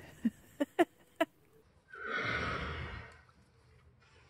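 A horse blowing a long breath out through its nostrils, about a second long, near the middle. Before it come four short sharp sounds in the first second or so.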